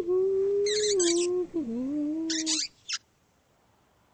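A cartoon character's voice holding a long hummed 'hmm' note that sags and slides down in pitch, with two short bursts of rattly hiss over it. It stops about three seconds in.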